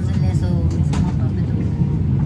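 Passenger train in motion heard from inside the carriage: a steady low rumble of wheels and running gear, with a couple of light clicks about a second in.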